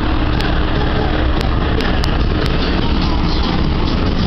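Steady, loud rushing noise of wind on the microphone, heaviest at the low end, with a few faint clicks.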